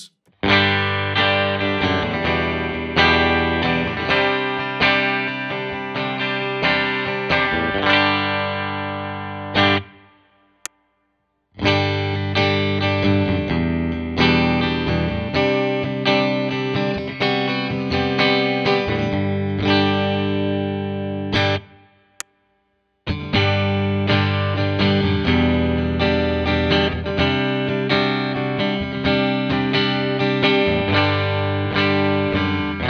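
Fender Player Lead II electric guitar, with two slanted Alnico 5 single-coil pickups, played clean through a Fender Hot Rod Deluxe amplifier. Three passages of picked chords and notes, parted by two short breaks about a third and two thirds of the way through, one passage for each of the three pickup-selector positions.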